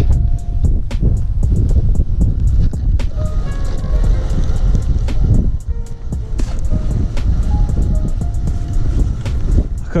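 Strong gusty wind buffeting the microphone: a heavy, uneven low rumble that dips briefly a little past the middle. Faint light clicks run underneath.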